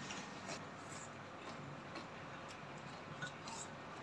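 Faint, scattered clicks of wooden chopsticks against ceramic rice bowls and a plate as people eat, over quiet room tone.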